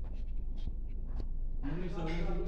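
Indoor room tone: a steady low hum with faint rustling and a few soft clicks, and a voice starting to speak near the end.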